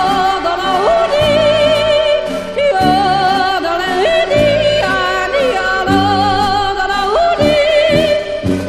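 A woman yodeling with wide vibrato, her voice flipping quickly and repeatedly between low chest notes and high head notes, over instrumental accompaniment with a steady bass.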